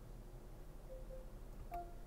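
Faint button click and short electronic beep from the Lexus GS 350's infotainment controls near the end, as the screen is switched to the main menu. A softer pair of short tones comes about a second in, over a steady low hum.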